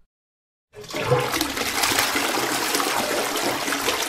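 Toilet flushing: a rush of water that starts suddenly about three-quarters of a second in and carries on steadily.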